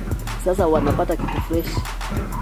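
A voice over background music, with a steady low electrical hum underneath.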